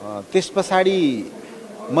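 Only speech: a man talking in short phrases with a pause before he goes on.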